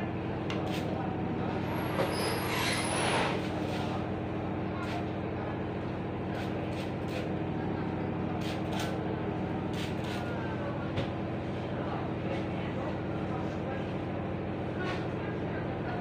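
A water spray bottle spritzing onto hair in one burst of hiss about two seconds in, over a steady low electric hum, with scattered light clicks from handling the hair and comb.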